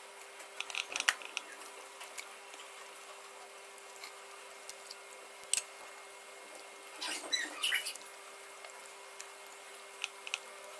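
Hands handling and rolling a filled paratha wrap on a glass plate: soft crackles, rustles and small taps, with a few clicks about a second in, a sharp tick around five and a half seconds and a longer rustling patch around seven to eight seconds. A faint steady hum sits underneath.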